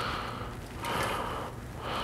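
A soft breath about a second in, over quiet room noise.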